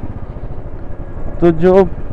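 Royal Enfield Bullet's single-cylinder engine running as the motorcycle rides along, with wind rushing over the microphone.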